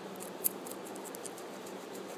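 Guinea pig crunching a raw carrot with its front teeth: a quick run of small crisp bites, one louder crunch about half a second in.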